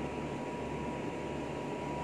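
Steady mechanical hum and hiss with a thin, unchanging high whine, like a running fan or other machinery.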